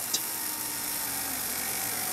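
Continuous-rotation hobby servo's small gear motor whirring, its pitch falling slightly as it winds down to a stop near the end. It is slowing because its PWM control pulse is nearing 1.5 ms (a count of 90), the stop setting.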